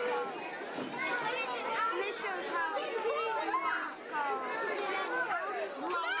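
Many children's voices talking and calling over one another at once: the steady chatter of a crowded room.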